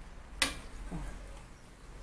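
A single sharp clink of metal spoons about half a second in, as they handle a roll frying in a small pan of oil, over a faint low background hum.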